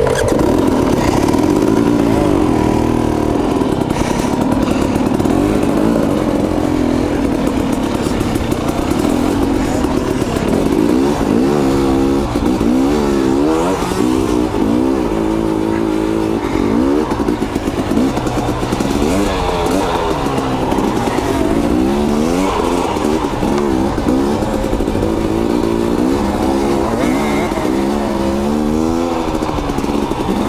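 KTM two-stroke dirt bike engines, heard close from the rider's own bike, revving up and down on a slow rocky trail ride. The engine pitch rises and falls every second or so, more often in the second half, with the smaller bikes running ahead.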